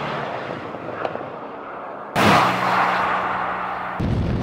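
Bentley Flying Spur Speed's 4.0-litre twin-turbo V8 running hard as the car passes, its engine note fading away. About two seconds in, a second loud pass begins suddenly and fades again.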